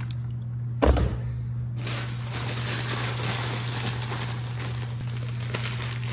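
A single thump about a second in, then continuous crinkling of plastic snack and ramen packets being handled in a cardboard box, over a steady low hum.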